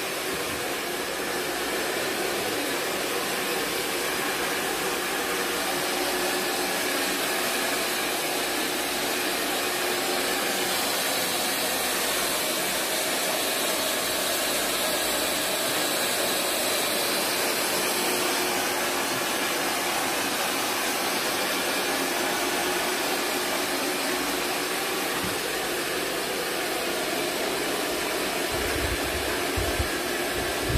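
Hand-held hair dryer running steadily as it blows hair dry, with a few low bumps near the end.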